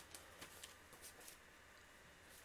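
Faint rustling of paper sheets being leafed through by hand, a few soft rustles in the first second and a half.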